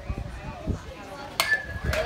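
Softball bat hitting a pitched ball: a single sharp crack about one and a half seconds in, with a short ringing ping after it.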